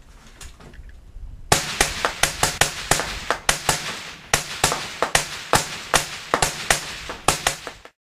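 Two AR-style rifles firing a rapid string of semi-automatic shots, the two shooters' shots overlapping at roughly three to four a second. The shooting starts about a second and a half in and cuts off suddenly just before the end.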